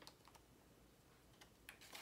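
Near silence with a few faint clicks and rustles of a cash-envelope binder's plastic pockets and paper bills being handled as a page is turned, some near the start and a few more near the end.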